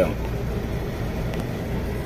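Steady low machinery hum with a constant noisy drone, typical of running refrigeration or air-handling equipment.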